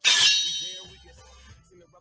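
A single loud metallic clang that strikes at once and rings, fading away over about a second.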